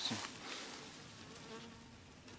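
A flying insect buzzing with a faint, steady hum close to the microphone.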